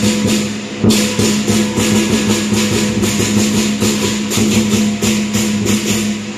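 Southern lion dance percussion ensemble playing: a big drum beating under cymbals clashed in a fast, steady rhythm, with a steady low ring beneath. One especially heavy stroke lands about a second in.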